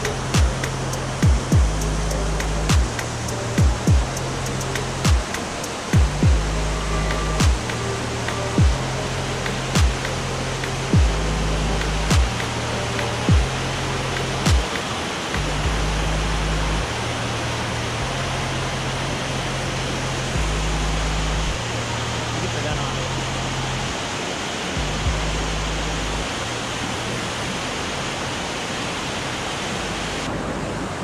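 Background music with a steady beat and a repeating bass line laid over the continuous rush of fast, swollen floodwater pouring over rocks. The drum hits drop out about halfway through, the bass fades a few seconds before the end, and the water rush grows stronger in the second half.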